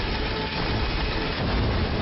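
Military transport helicopter running close by on the ground: a loud, steady, dense rumble and rush of rotor and engine noise.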